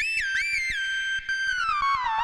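Korg Prologue analog synthesizer playing a factory preset: a single high lead line that slides between notes with portamento, holds one note, then glides slowly down near the end.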